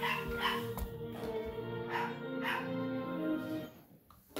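End-credits music of an animated TV series playing from a television's speaker, with short, falling high-pitched calls over it in two pairs. The sound drops away sharply just before the end.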